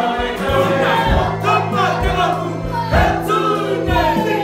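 Māori cultural performers singing together to a strummed acoustic guitar, with regular beats about once a second.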